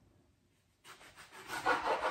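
Kitchen knife slicing through an aubergine on a plastic cutting board, the blade making a rasping, sawing cut. It starts after a brief silence, just under a second in.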